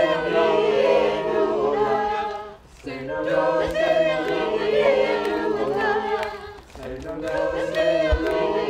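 A group of voices singing an improvised a cappella circle song: steady low sung notes underneath with layered melodic lines above. The singing comes in repeating phrases of about four seconds, each ending in a brief dip.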